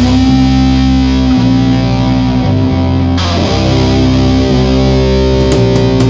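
Stoner/doom metal: heavily distorted electric guitar and bass holding long, sustained chords that change every second or so. Drum hits come back in near the end.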